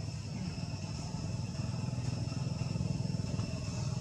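A steady low rumble with a steady, high-pitched insect drone over it.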